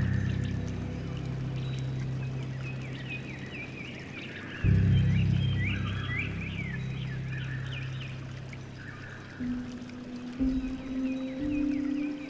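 Soft piano music over a steady rush of running water. Low chords ring at the start and again from about four and a half seconds in, with higher notes later, and a bird chirps repeatedly in the middle.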